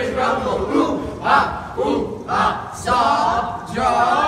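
A group of boys chanting a cheer together in unison, with loud shouted syllables.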